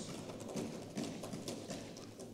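A few faint, irregular hollow knocks in the quiet of a large hall.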